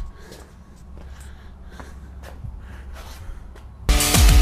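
Quiet, steady low rumble with a few faint scuffs and clicks. Loud electronic music cuts in just before the end.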